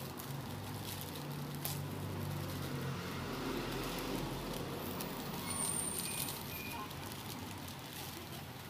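Passing street traffic: a vehicle engine hums low for the first few seconds, a rumble swells in the middle, and a brief high squeal comes about six seconds in.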